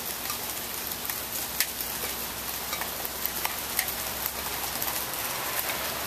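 Steady rain falling, with scattered sharp drops and drips ticking on nearby surfaces.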